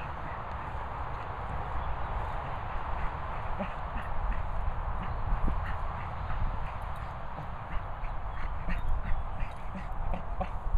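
A dog rolling on its back in grass: scattered light ticks and rustles over a steady low rumble of wind on the microphone.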